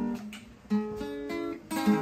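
Solo acoustic guitar playing a song's introduction, chords picked and strummed and left to ring, with a short lull about half a second in before new chords sound.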